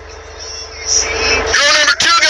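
Steady low engine rumble with an even pulse, heard inside a truck cab, with a man's voice starting up again about a second and a half in.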